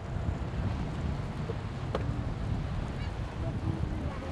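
Wind buffeting an outdoor lapel microphone: a steady, gusty low rumble, with a single short click about two seconds in.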